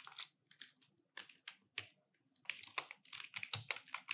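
Faint typing on a computer keyboard: irregular runs of key clicks, sparse at first, then a quicker run in the second half.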